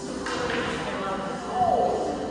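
A pool cue striking the cue ball with a single sharp click about a quarter-second in, ringing briefly in a large room, then a voice with a falling pitch near the end.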